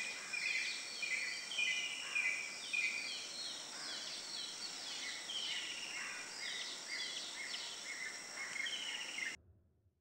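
Several small birds chirping and calling over one another in short rising and falling notes, over a steady high hiss of ambient noise; the sound cuts off suddenly near the end.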